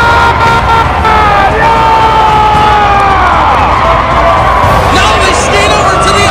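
Hockey arena crowd cheering and yelling, with many voices holding long shouts over a loud din, celebrating an overtime winning goal.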